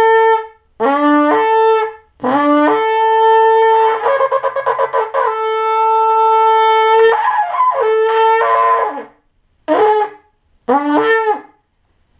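A large shofar is blown in a series of loud blasts, each jumping from a low note up to a higher one. A long held blast of about five seconds wavers and breaks partway through, then two short blasts follow near the end.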